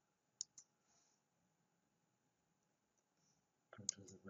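Two quick computer mouse clicks, about a fifth of a second apart, against near silence.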